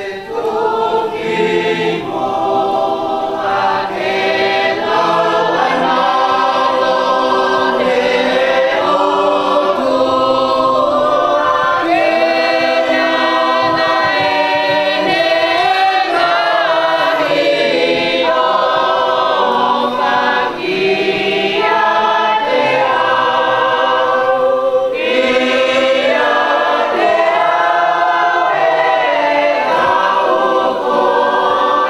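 A roomful of people singing together in chorus, several voices at once, with long held notes.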